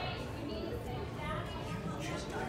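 Indistinct background chatter of people talking, over a steady low hum of a busy indoor room.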